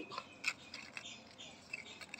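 Dry leaves crinkling and crackling faintly as they are handled, with a few sharper crackles scattered through the stretch.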